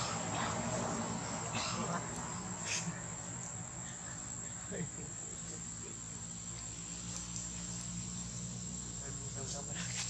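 A steady high-pitched insect drone with a low hum underneath, and a few short rustles and clicks in the first three seconds.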